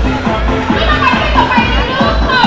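Music with a steady bass beat, about three beats a second, and high children's voices calling out over it.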